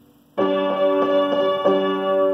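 Upright piano playing a melody of repeated notes: the same pitches struck again and again in an even rhythm, about three strokes a second, starting about half a second in.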